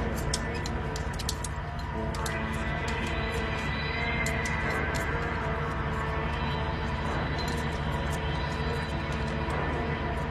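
Tense, suspenseful film-score music: held chords over a low drone, with quick high clicks scattered through it.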